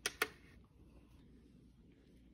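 Two sharp clicks about a fifth of a second apart at the very start, as a hand is put into a UV/LED nail lamp, then faint room tone.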